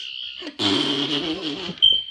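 Toy sonic screwdriver sounding its high, steady electronic buzz, which gets louder and rougher through the middle and breaks off briefly near the end.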